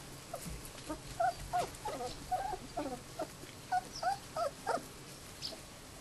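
Australian kelpie puppies giving a quick string of short, high whining cries that bend up and down in pitch, stopping about five seconds in.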